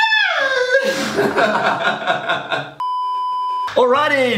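Laughing voices, then about three seconds in a single steady electronic bleep tone lasting just under a second, cut off abruptly as talk and guitar music start.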